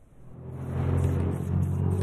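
Road traffic: a motor vehicle's engine hum that fades in over the first half second, then holds steady.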